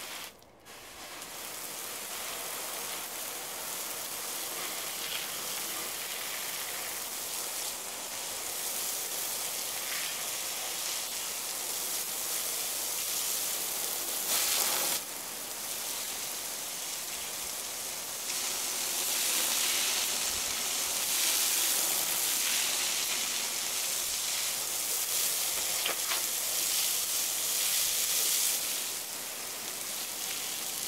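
Water spraying with a steady hiss from a hose onto a slab of dry concrete mix, soaking it in place. The hiss grows louder and softer as the spray moves, fuller in the second half.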